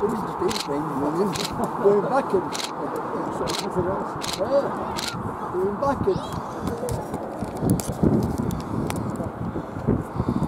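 Indistinct voices of people talking close by, with a regular clicking about twice a second through the first half. A rough, rumbling noise takes over in the second half.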